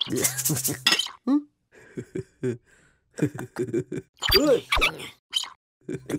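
Cartoon sound effect of powder pouring out of a box into water as a brief loud rush of noise, followed by the characters' wordless babbling and exclamations, with two soft thumps.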